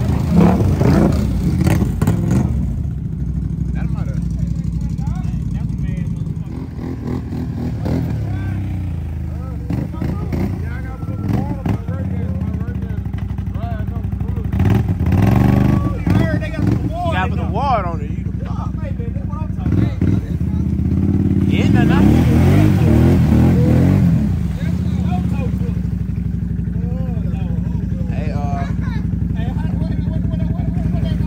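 ATV engines running in deep mud, revving up hard near the start and again about two-thirds of the way through.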